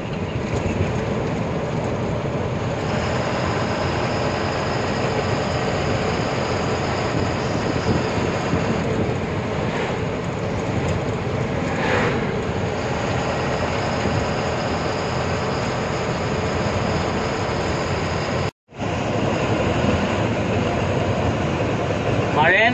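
Steady engine and road noise of a truck driving, heard from inside its cab. The sound cuts out for a moment about three-quarters of the way through.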